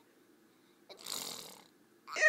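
A single noisy, breathy sound from a person, about a second in and lasting under a second, with no pitch to it, fading out; otherwise quiet.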